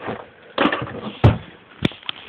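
Handling noise from a handheld camera rubbing against cloth, with three sharp knocks, the loudest in the middle.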